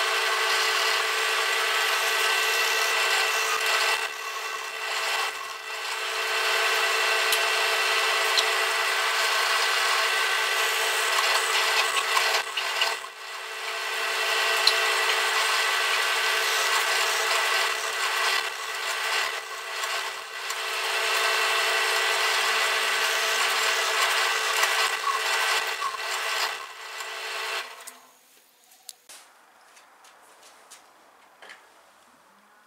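Bench drill press running with its bit boring into a block of wood: a steady motor whine under the grinding noise of the cut. The cutting noise eases off briefly twice, and the machine stops near the end.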